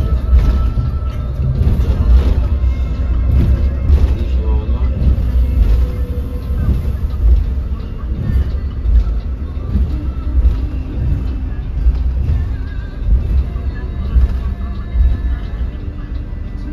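The low, steady rumble of a coach's engine and tyres heard from inside the cabin while the bus cruises, with music playing over it.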